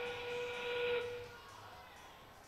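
FIRST Robotics Competition field's endgame warning sound played over the arena sound system as 30 seconds remain in the match: a single held whistle-like note that stops about a second in and dies away in the gym's echo.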